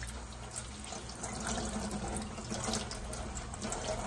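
Kitchen faucet running steadily, its stream poured through bark potting mix in a plastic orchid pot and draining out of the bottom into a stainless steel sink: the mix is being saturated.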